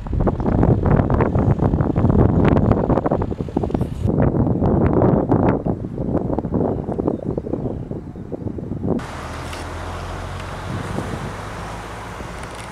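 Strong wind buffeting the microphone, gusting unevenly for about nine seconds. It then cuts abruptly to a quieter, steady hiss of road traffic.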